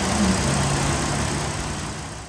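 A car engine idling: a low, steady hum under a broad outdoor hiss, beginning to fade near the end.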